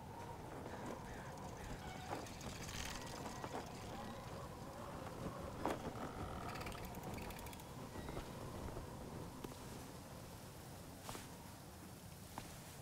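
Quiet background ambience with a few scattered small clicks and creaks, the sharpest about halfway through.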